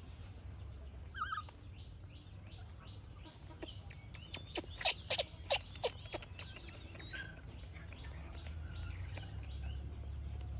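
A disposable diaper being unfolded and fastened around a baby monkey: a quick run of sharp crackles and rips about four to six seconds in. Birds chirp faintly in the background.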